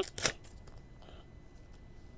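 Paper and a thin plastic coin sleeve crinkling in the hands as a dime is unwrapped: one sharp crinkle just after the start, then faint rustling.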